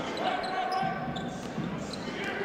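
Live basketball game sound in an arena: a crowd murmuring, with a basketball being dribbled on the hardwood court.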